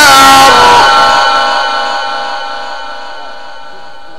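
A male Quran reciter's amplified voice ends a long held note of melodic recitation about half a second in. The sound system's echo then rings on and fades away over the next few seconds.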